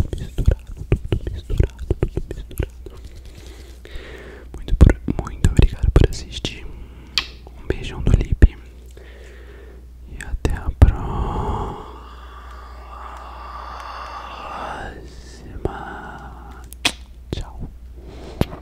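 Close-up ASMR whispering and mouth sounds into a 3Dio binaural microphone, with hand movements past its ears. Many quick clicks through the first half, then a longer, softer breathy sound, with a few more clicks near the end.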